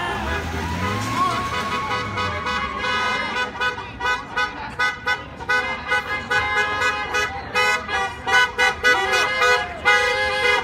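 A pickup truck's engine rumbling as it drives slowly past, then car horns tooting again and again, short uneven beeps several a second from about three seconds in, as the parade cars go by.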